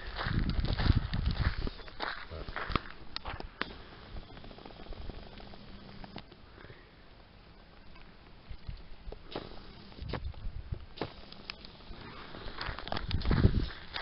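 Footsteps on a gravel path, heard as scattered crunching clicks, with low rumbling noise on the microphone in the first couple of seconds and again near the end.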